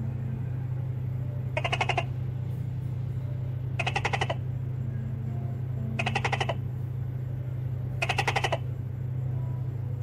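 An animal's short rattling calls, each a quick run of clicks, four times about two seconds apart, over a steady low hum.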